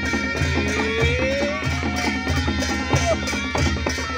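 Nepali panche baja band playing: barrel drums beat a steady rhythm of about three strokes a second under a wind-instrument melody that slides upward in pitch.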